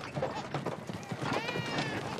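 Horse hooves clopping at a walk on a dirt track, with a short high wailing cry about a second and a half in.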